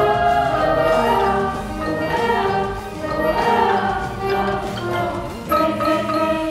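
Ensemble music of long held chords from several voices or instruments, with a loud new chord coming in about five and a half seconds in.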